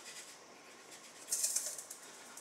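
Granulated sugar poured from a glass jar into a stainless steel bowl: a short, high hiss of grains starting a little past halfway through and lasting about half a second.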